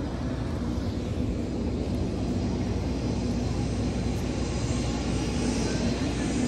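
Aircraft engine running steadily on an airport apron: an even rushing noise with a faint low hum underneath.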